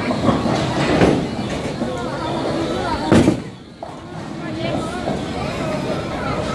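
Bowling ball rolling down a wooden lane with a low rumble, against the chatter of a bowling alley. A sharp knock about three seconds in is the loudest sound.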